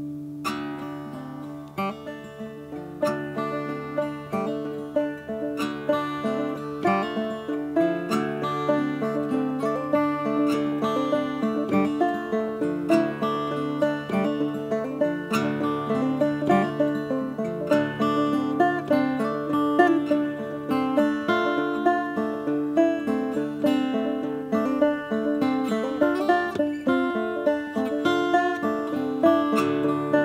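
Banjo and fingerpicked acoustic guitar playing an instrumental passage together. Quick plucked notes ring over steady low sustained notes. The playing starts quietly and grows fuller over the first couple of seconds.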